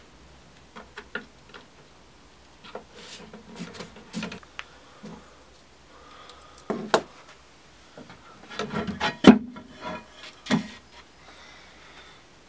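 Scattered light knocks, clicks and rubbing as a glass screen panel is worked loose and lifted out of an old veneered-plywood TV cabinet, the sharpest knock about nine seconds in.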